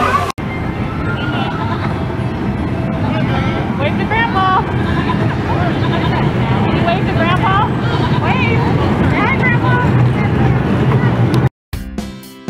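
High children's voices and crowd chatter over the steady low rumble of a kiddie tractor ride moving along its track. It all cuts off suddenly near the end.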